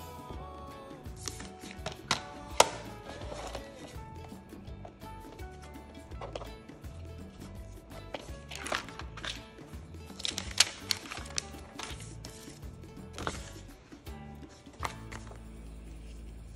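Background music, with sharp clicks and taps from a picture frame being opened and handled on a granite countertop, the loudest about 2.5 and 10.5 seconds in.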